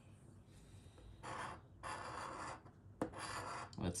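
A coin scraping the coating off the play area of a Hot 7's scratch-off lottery ticket in three passes, about a second in, two seconds in and near the end, with a short tap between the second and third.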